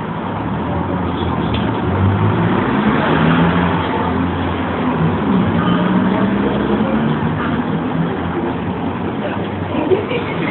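A motor vehicle's engine running close by, a low hum that swells about two seconds in, then glides in pitch and eases back, over street noise.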